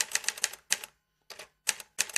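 Typewriter key strikes as a sound effect: quick clicks in short runs, with a short pause near the middle.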